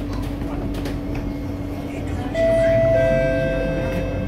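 Singapore MRT train carriage humming steadily at the platform. About two seconds in, the electric traction drive starts with a steady high whine, strongest on one tone, as the train begins to pull away.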